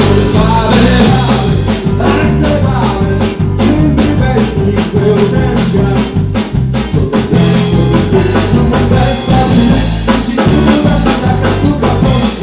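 Live band playing an upbeat song, with a drum kit keeping a steady, quick beat under electric guitar and other instruments.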